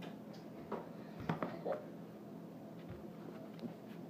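Quiet room tone with a steady low hum, broken by a few faint, short knocks and clicks in the first half.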